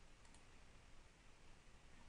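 Near silence: faint room tone with a faint computer mouse click or two.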